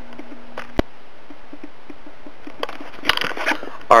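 Camera handling noise: a single sharp click about a second in, then faint scraping and small clicks, growing busier near the end.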